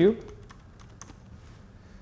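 Computer keyboard being typed on: a short run of quiet, irregular key clicks as a single word is entered.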